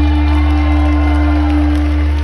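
A live rock band holding one long chord over a deep bass note at the close of a song.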